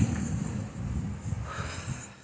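Wind buffeting the phone's microphone in a breeze, an uneven low rumble that dies down near the end.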